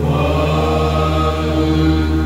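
Male voice chanting Hindu puja mantras in long, held tones, over a steady low hum.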